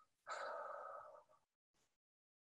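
A woman's audible breath, lasting about a second, taken in a pause of a spoken guided meditation.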